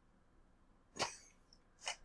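A man's single short cough about halfway through, with a second, quieter short sound near the end; otherwise near silence.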